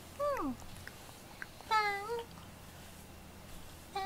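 Domestic cat meowing twice: a short call that falls in pitch just after the start, then a longer, louder meow about a second and a half later.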